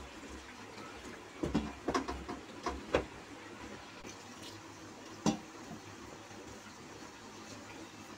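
Water poured in a thin stream from a steel pot into flour in a steel mixing bowl while a hand works it into dough, with a few short knocks, mostly in a cluster in the first three seconds and one more about five seconds in.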